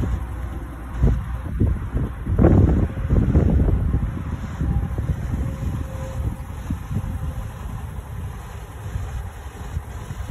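Wind buffeting a phone microphone outdoors: an uneven low rumble in gusts, strongest a couple of seconds in, then easing.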